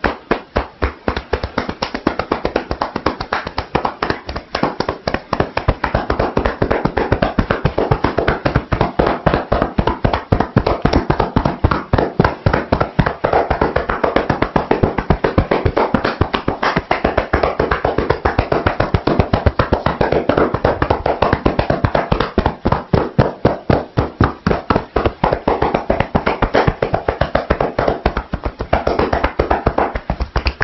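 Percussive massage (tapotement): the therapist's hands tapping rapidly on a seated woman's head and shoulders, a steady patter of strikes several times a second.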